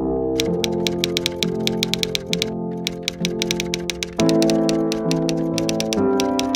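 Typewriter key-strike sound effect, rapid clicks of about seven a second with a short break midway, over background music.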